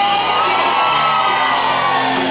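Live worship band and choir performing, with one long vocal note that rises and then falls over the band, and a crowd cheering along.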